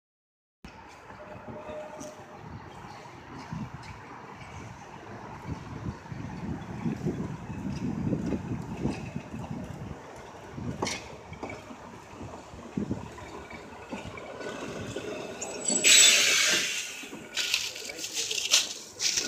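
Blackpool Transport 606, a 1934 English Electric open-air tram, rolling toward the camera on its rails with a steady rumble of wheels and track and scattered clicks, loudest in the middle. About two seconds before the end comes a sudden loud hiss of air lasting about a second, typical of the car's air brakes as it comes to a stop.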